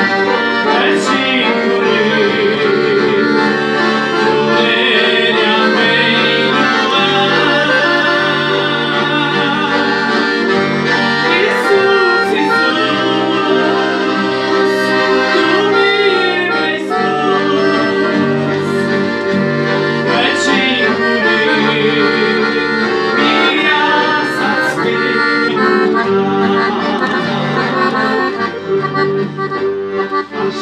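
Red Verdi II piano accordion playing a tune, with a man singing along.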